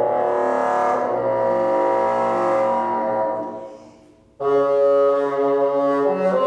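Solo bassoon playing held notes; the tone fades away about three and a half seconds in, and after a brief pause a loud new note starts.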